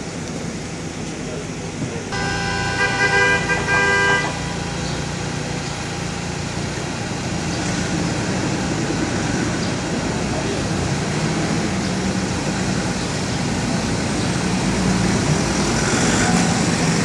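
A car horn sounds for about two seconds, a couple of seconds in, then several cars pull away one after another over cobblestones, their engines and tyres running with a level that rises toward the end.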